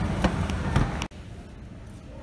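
Shop moving walkway (travelator) running with a low hum and a few light knocks. About a second in the sound cuts off abruptly, leaving quieter shop background noise.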